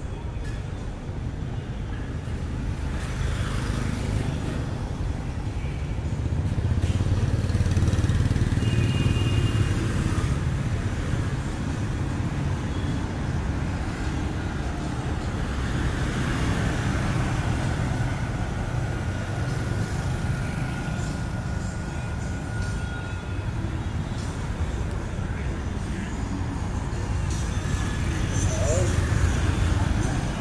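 City street traffic: motor scooters and cars passing with a steady rumble, louder as vehicles go by about a quarter of the way in and again near the end, with people's voices mixed in.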